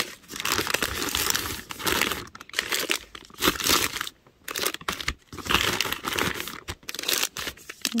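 Crinkly coated tote bag and plastic snack wrappers rustling and crinkling as wrapped chocolate bars and snacks are packed into the bag by hand. It comes in a series of bursts with short pauses between them.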